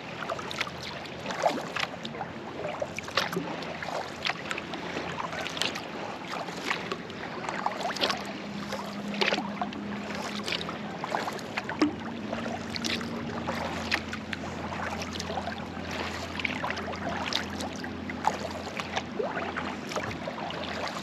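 Kayak paddle strokes, with irregular splashes and water dripping off the blades. A faint low steady hum joins about eight seconds in.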